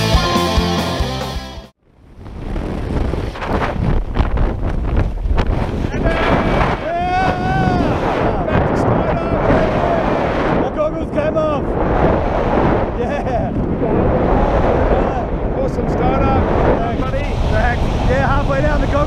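Wind buffeting a skydiving camera's microphone in the open air, a steady dense rush. Music fades out within the first two seconds. From about six seconds in, a voice calls out over the wind now and then.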